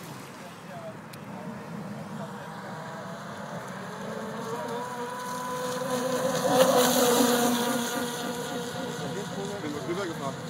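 Electric motors of a Kyosho Twin Storm 800 radio-controlled speedboat running with a steady whine. It grows louder with a rush of spray as the boat turns close by, about six to seven seconds in, then fades as it runs off.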